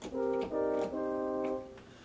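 Yamaha Piaggero NP-V80 digital keyboard playing its French horn voice: two held chords, a short one and then a longer one of about a second that fades away near the end.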